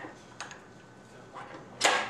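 A few faint clicks as metal lathe tooling, a knurled drill chuck, is handled, with a short sharp sound near the end.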